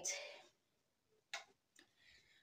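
Mostly near silence: a spoken word trails off at the very start, and two brief faint noises come in the second half, about half a second apart.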